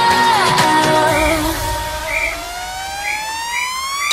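Electronic dance music build-up. The full mix drops back about a second in to a low bass drone with brief synth chirps, then a synth tone glides steadily upward in pitch as a riser.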